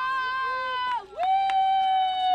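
A woman cheering with long, held shouts: one cheer ends about a second in and another begins right after it, held steady.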